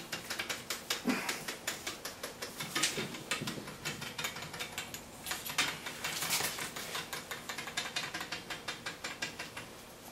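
Two spring-mounted wooden woodpecker toys pecking their way down a wooden dowel pole: a fast, even run of light wooden clicks as each bird bounces on its spring, knocks against the pole and slips a little further down.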